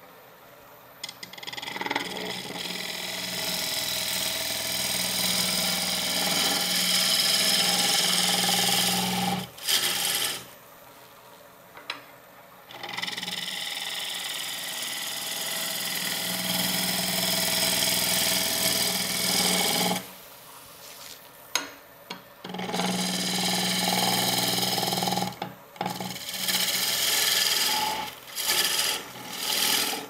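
A gouge cutting a spinning wooden blank on a wood lathe: a steady rushing, scraping noise of shavings coming off the wood. It comes in long passes of several seconds, with short breaks where the tool is lifted, and shorter passes near the end.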